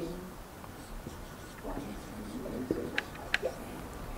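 Marker pen writing on a flip-chart pad, with a few short scratchy strokes about three seconds in. Faint murmured voices underneath.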